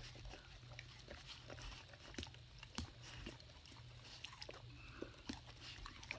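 A dog nuzzling right up against the phone: faint, scattered small clicks and mouth noises.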